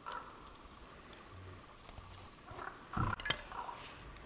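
Axe striking and splitting a log on a wooden chopping block, with one heavy chop about three seconds in and a lighter knock right after it.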